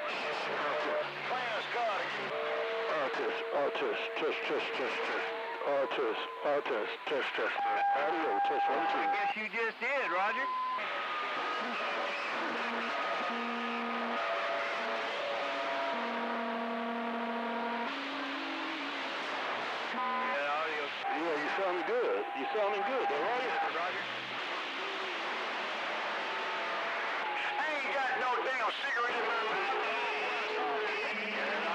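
Radio receiver on a busy CB channel: several faint, garbled voices overlapping under constant static. Steady whistle tones at different pitches come and go every few seconds, heterodynes from carriers slightly off-frequency.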